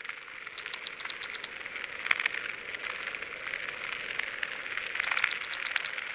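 Crackling static: a steady hiss with two runs of rapid clicking, about half a second in and again near the end, and one sharp click about two seconds in.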